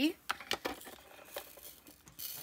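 A few light, sharp plastic clicks from handling a small clear diamond-painting drill container over a plastic drill tray, as it is tipped to pour out its resin drills.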